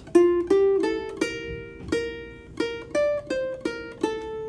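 A ukulele playing a slow single-note melody: about ten plucked notes in a steady count, the last one left ringing.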